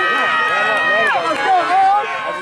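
Football crowd in the stands yelling, several voices overlapping, one holding a long drawn-out shout that drops in pitch just after a second in: spectators calling for the defense.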